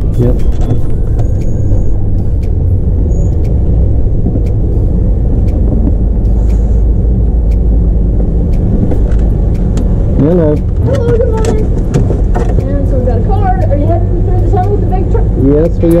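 Steady low rumble of a Class C motorhome's engine and drivetrain heard from inside the cab while it rolls slowly. Muffled voices come in over the rumble in the second half.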